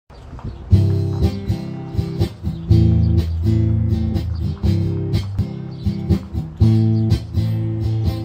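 Strummed acoustic guitar chords with no voice, the instrumental intro of a song, with heavier strokes about every two seconds and lighter strums between them.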